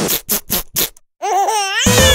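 A quick run of noisy electronic music hits, then after a brief gap a young child laughing in high squeals that glide up and down.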